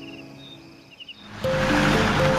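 Soundtrack music fading out over faint repeated insect-like chirps. About one and a half seconds in, a sudden rush of tyre-and-dust noise starts as a vehicle drives by on a dirt road, with a new held music note.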